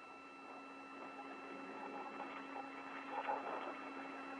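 Steady hiss and electrical hum of an open space-to-ground radio channel between transmissions, at a low level, with a faint indistinct murmur about three seconds in.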